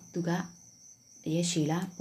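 A voice speaking two short phrases, with a faint steady high-pitched whine running underneath.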